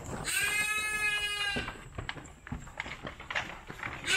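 A goat bleats once, a single drawn-out call lasting a little over a second.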